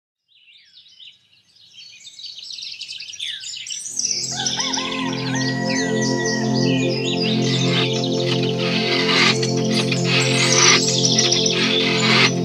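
Birds chirping and twittering. About four seconds in, a steady held musical chord comes in under them, and the sound grows louder.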